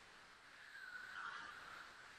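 Near silence: a faint, steady hiss in a pause between spoken lines, slightly louder in the middle.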